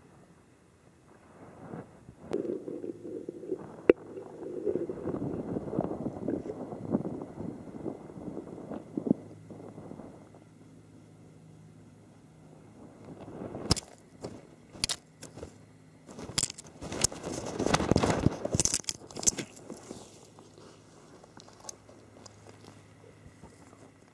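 Mazama pocket gopher moving through its burrow close to the microphone, with scraping, crunching and rustling of soil and roots. The sound comes in two stretches, the second with sharp clicks, over a faint steady hum.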